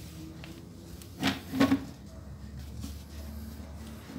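A hand wipes and scrapes softened paint and paint remover off a BMX handlebar. Two short, loud scrapes come in quick succession a little over a second in.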